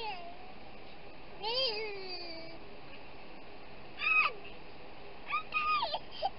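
A series of short, high-pitched cries that rise and fall in pitch, four or so of them, the longest about a second in length, over low steady background noise.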